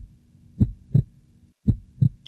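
Heartbeat sound effect: low lub-dub double thumps, two beats about a second apart, with a faint steady hum underneath.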